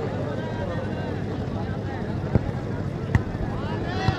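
A large outdoor crowd of spectators murmuring and chattering, many voices overlapping with no single speaker standing out. Two short sharp clicks cut through in the second half.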